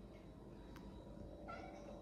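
A brief, faint high-pitched call about one and a half seconds in, over quiet room tone.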